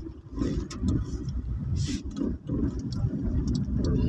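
Vehicle cabin noise while driving slowly: a steady low road and motor rumble with a few light ticks and rattles.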